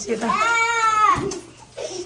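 A high-pitched, drawn-out vocal squeal about a second long, its pitch rising slightly and then falling, from a person's voice, ended by a short thump; another voice starts near the end.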